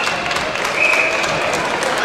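Spectators applauding, with crowd voices mixed in.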